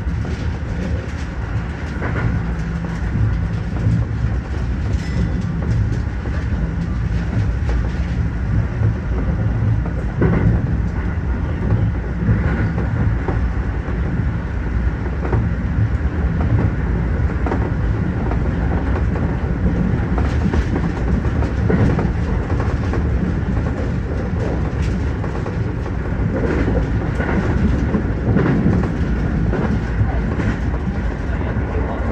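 Keio Line electric commuter train running on rails, heard from inside the train: a steady low rumble of wheels on track with irregular clacks as the wheels cross rail joints and points.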